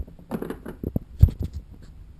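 A small hard plastic case holding a device and its cable being handled: a run of clicks, knocks and rattles, with one louder thump a little after a second in.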